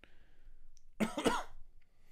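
A man coughs once, a short cough about a second in, with faint breathing around it.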